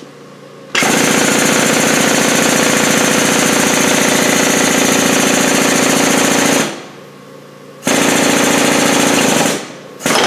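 Hydraulic shop press pump running with a rapid, even chatter as the ram lowers onto a bushing driver. It stops about two-thirds of the way through, starts again about a second later, and cuts out just before the end.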